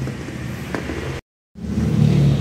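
Steady low hum of a vehicle running nearby, with one faint click a little under a second in. The sound cuts out to dead silence for about a third of a second just past the middle, then the hum comes back.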